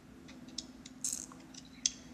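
A few faint, sharp clicks and one brief hiss over a low steady hum, with no speech.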